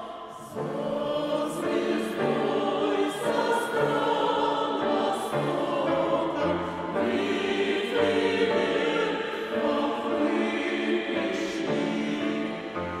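Mixed choir of women and men singing a hymn in harmony, in held notes, with a short pause between phrases about half a second in.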